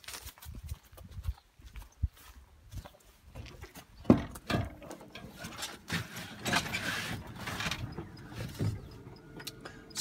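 Footsteps of a person walking over grass and rough ground, then a sharp clunk about four seconds in and scuffing and rustling as he climbs up into a tractor cab.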